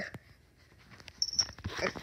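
A kitten gives a short, faint mew about three-quarters of the way through, among soft rustling from being handled. The first second is nearly silent.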